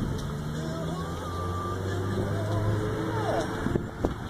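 A motor vehicle's engine running close by, a steady low hum that cuts out shortly before the end.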